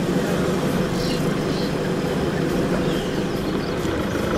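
Vehicle engine running steadily, a low, even drone with road and dust noise.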